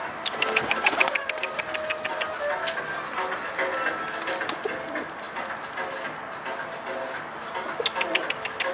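Domestic pigeons cooing in short repeated phrases, with a quick run of sharp taps near the start.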